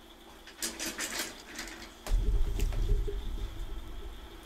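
Papers rustling and scraping close to a desk microphone, then a low rumble of handling noise on the microphone from about halfway through.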